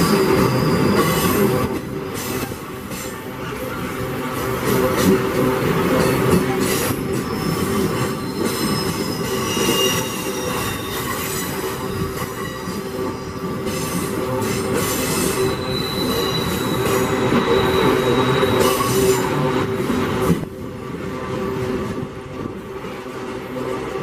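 Loaded iron-ore gondola wagons rolling past close by: steady rumble of steel wheels on the rails, with irregular clatter and thin high-pitched wheel squeals that come and go.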